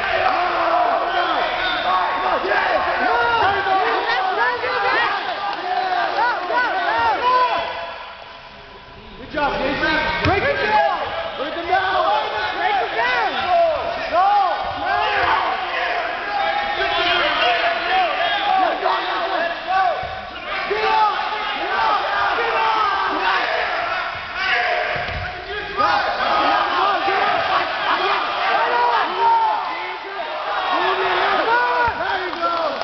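Crowd of spectators shouting and talking over one another at a wrestling match, with a few dull thuds. The noise drops briefly about eight seconds in.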